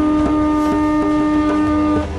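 Conch shell blown as a horn: one long, steady note held throughout.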